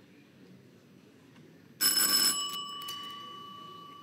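An electronic bell signal rings once, starting suddenly about two seconds in and dying away, and marks that the time allowed for the question has run out. Before it there is only faint room tone.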